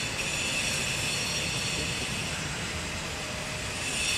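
Steady outdoor background noise: a continuous low rumble and hiss, even throughout.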